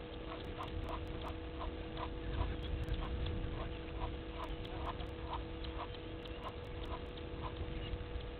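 Egyptian goose calling in a long run of short, repeated honks, about two to three a second.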